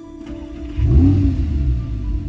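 Audi R8 engine starting: it catches about three-quarters of a second in with a brief rev flare that rises and falls, then settles into a deep, steady idle.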